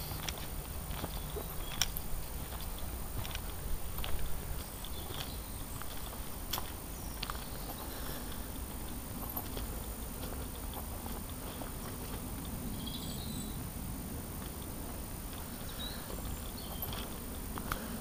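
Footsteps on a woodland path covered in leaf litter, giving irregular clicks and snaps, over a steady low rumble of wind on the camera's microphone.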